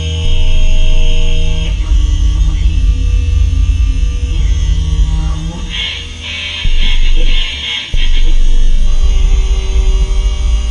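Loud improvised drone music: a heavy low bass drone under layered sustained tones that shift pitch every second or two. A bright, noisy, shimmering layer comes in from about six to seven and a half seconds in. The bass drops out briefly and returns suddenly about eight seconds in.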